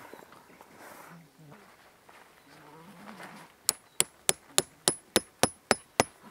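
A metal tent stake being hammered into the ground: about eight quick, sharp strikes with a high metallic ring, roughly three a second, in the second half.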